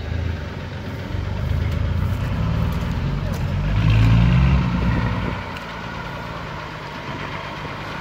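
Mercedes-Benz Unimog's diesel engine pulling the truck through deep mud and water, its low note building and then easing off about five seconds in.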